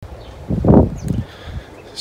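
Wind buffeting a phone's microphone outdoors in uneven gusts, the loudest about half a second to a second in.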